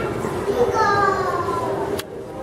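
Background chatter of people talking, with a child's voice calling out once in a long cry that falls in pitch, starting a little under a second in.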